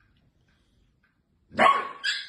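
Near silence, then about a second and a half in a sudden loud bark from an adult Shiba Inu as she lunges at a puppy.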